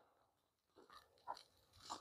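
Near silence: room tone, broken by two faint short ticks, one about a second and a quarter in and one just before the end.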